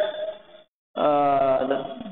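A man's voice: a word trails off, a brief dead gap, then a long drawn-out "eh" held at one pitch as a hesitation filler.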